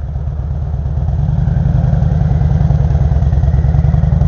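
Cruiser motorcycle's engine running under way in traffic, its low exhaust note getting louder about a second in.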